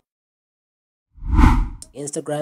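Dead silence, then a little over a second in a single short, loud transition sound effect swells up and dies away within under a second: a deep thud with a hissing whoosh on top.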